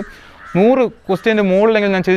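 A crow caws once, loud and close, about half a second in, its call rising and falling in pitch; a man's speech resumes just after.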